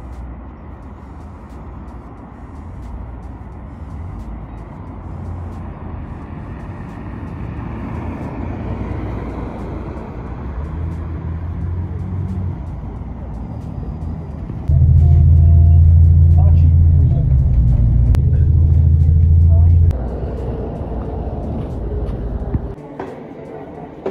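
Double-decker bus approaching, its engine rumble growing steadily louder, then a loud low engine drone for about five seconds as it comes close, cutting off suddenly.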